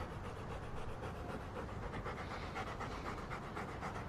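A dog panting steadily in quick, even breaths.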